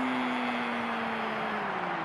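A football commentator's single long, drawn-out cry on one held vowel, its pitch sinking slowly, over steady crowd noise.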